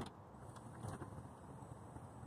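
Faint, steady mechanical whir of a minivan's power sliding door motor as the door is set closing from the key fob.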